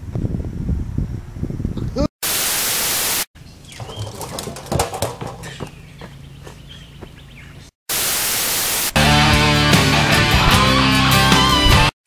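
Two bursts of TV-static hiss, each about a second long, break up stretches of quieter outdoor sound with a few faint knocks. About nine seconds in, music starts and is the loudest sound.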